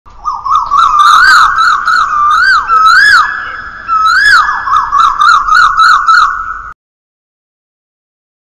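Loud, siren-like warbling whistle tones that sweep quickly up and down in pitch over a steady high tone, cutting off abruptly near the end.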